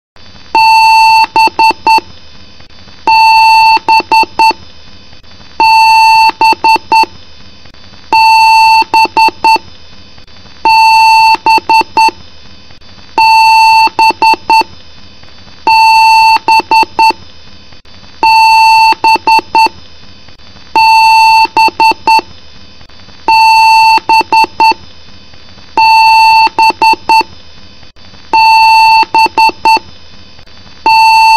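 PC speaker beeping during the BIOS power-on self-test: one long beep followed by several quick short beeps, the pattern repeating about every two and a half seconds, like a BIOS beep code. A steady hiss runs underneath.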